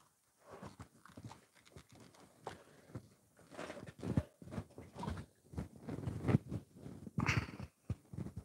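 Quilt fabric being handled and pressed with an iron: soft, irregular rustles and light knocks, sparse at first and busier in the second half.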